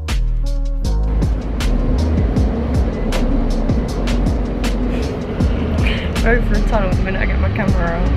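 Background music with a steady beat over the rumble of a moving passenger train, heard from inside the carriage. A voice comes in briefly near the end.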